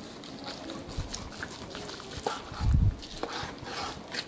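A long knife slicing through smoked beef shoulder clod on a wooden cutting board, with faint scraping and a few soft thuds on the board, the loudest just under three seconds in.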